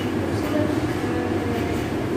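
A woman talking over a steady background noise with a low hum.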